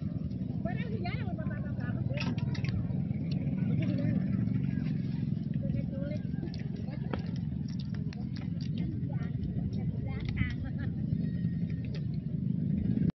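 A steady low outdoor rumble with faint voices in the distance and a few small clicks.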